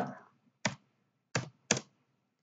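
Three sharp keystrokes on a computer keyboard: a single one, then two close together about a second later.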